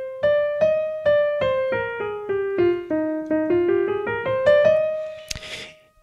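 Digital keyboard playing the E-flat (D-sharp) major scale one note at a time, about two to three notes a second. The notes step down through about an octave and climb back up, and the top note is held and fades out near the end.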